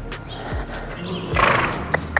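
A horse blows out once through its nostrils, a short, breathy snort about one and a half seconds in, as it comes to a halt on the long reins.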